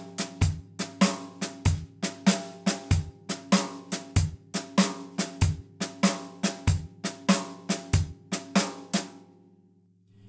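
Drum kit playing a traditional shuffle: a swung triplet cymbal pattern over soft snare ghost notes, with the bass drum on beats one and three, about every second and a quarter. The playing stops a little after eight seconds in and the kit rings out and fades.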